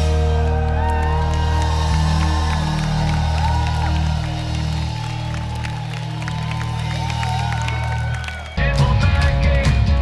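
A live rock band lets a final chord ring out at the end of a song while the crowd cheers and whistles over it. About eight and a half seconds in, the sound jumps abruptly to the full band playing loudly on the next song.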